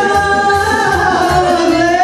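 Band music with a singer holding a long note that slides down near the end, over a steady beat.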